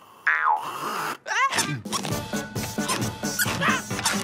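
Cartoon soundtrack. Just after the start comes a falling, whistle-like slide effect, and a quick rising squeal about a second and a half in. Then lively music with a steady beat, with short high squeaks and yelps over it.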